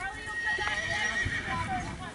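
A horse whinnying, one call lasting about a second and a half, over the hoofbeats of a pony trotting on arena sand.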